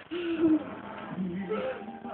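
A child's voice: one short drawn-out word, then quieter, low, hum-like vocal sounds about a second later.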